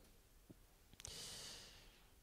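Near silence, broken about a second in by a faint click and then a soft breath into the microphone lasting just under a second.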